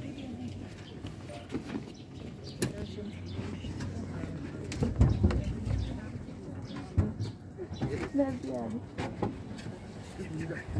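Low, murmured voices, with a sharp knock a few seconds in, a louder low thump about five seconds in, and another knock at about seven seconds.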